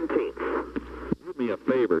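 Men's voices talking over a telephone line, from an old tape recording of a phone call, with a steady low hum under the speech.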